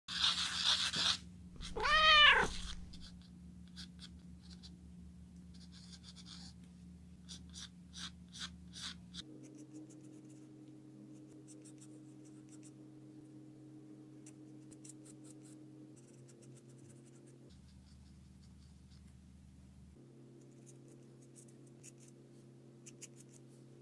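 A cat meows once, a single call rising and then falling in pitch about two seconds in, just after a short burst of noise. Faint pencil strokes scratch on paper over the next several seconds, and the rest is quiet apart from a low steady hum.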